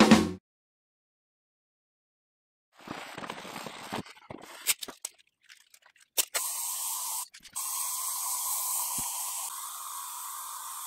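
Aerosol spray paint can spraying a welding helmet in a steady hiss, which breaks off briefly once and then runs on. Before it, rubbing and a few sharp clicks as the helmet is handled.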